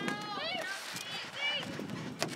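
Several high-pitched voices shouting and calling out across a soccer field during play, overlapping in short calls, with a single sharp thump right at the start.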